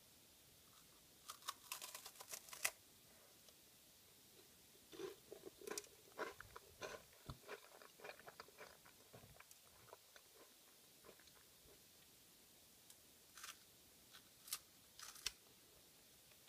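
Close-miked biting and chewing of a Puku-Puku Tai, a fish-shaped wafer filled with airy chocolate. It opens with a quick cluster of crisp crunches, then several seconds of chewing with small crackles and clicks. A few more sharp crunches come near the end.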